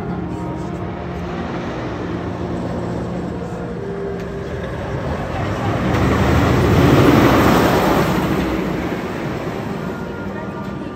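Steel Vengeance hybrid roller coaster train running past on its steel track: a rushing noise that swells up about five seconds in, is loudest around seven seconds and fades away again.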